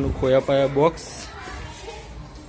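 Children's voices: a drawn-out shout or call during the first second, then fainter background chatter.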